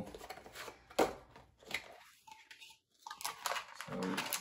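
Unboxing a small cardboard box and the plastic bag inside: scattered rustles and light knocks, a brief near-quiet gap a little after two seconds in, then more rustling near the end.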